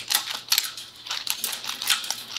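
Serrated jaws of MIG welding pliers scraping and clicking against the inside of a copper MIG gas nozzle, knocking weld spatter loose in quick, irregular metal-on-metal strokes.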